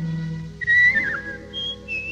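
Whistled cartoon bluebird chirps: a bright falling whistle about half a second in, a short higher note, then a warbling trill near the end, over soft orchestral accompaniment.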